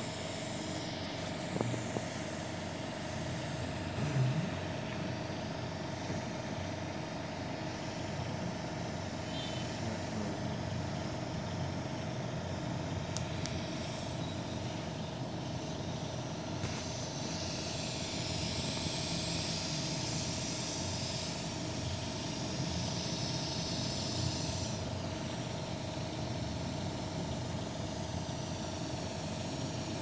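Steady machine hum with a constant mid-pitched tone. A hiss joins it from about seventeen to twenty-five seconds in.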